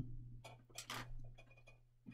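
A few faint, light clicks and rustles from small plastic model-kit parts being handled at a workbench, over a steady low hum.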